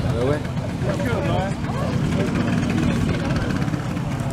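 Vespa scooter engines idling with a steady low rumble, with people talking over it.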